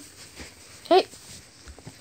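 A child's short, high-pitched shout of "Hey" about a second in, over faint rustling and soft knocks from a handheld camera being moved.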